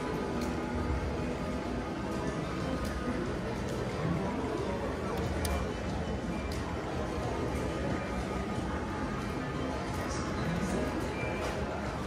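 Casino floor ambience: background music and the voices of other people, with a few gliding electronic tones and occasional sharp clicks as the video poker machine's buttons are pressed.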